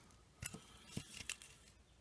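Mostly quiet, with a few faint, short clicks spread through the middle.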